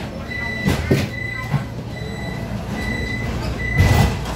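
Door-warning signal of a Vienna U-Bahn Type V train standing at a station: a high electronic beep repeating about once a second. There are knocks about a second in and a louder thump near the end.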